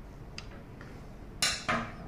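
A screwdriver set down on a hard tabletop: a sharp clink about one and a half seconds in, then a second, softer knock just after with a brief ring, over faint room tone.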